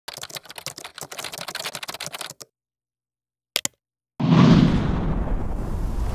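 Rapid typing on a computer keyboard for about two and a half seconds, a pause, then a quick double click. About four seconds in, a sudden loud rush of noise sets in and carries on.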